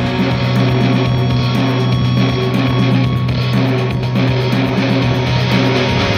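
Instrumental passage of a rock song, with no singing: guitar playing over a steady held low bass note.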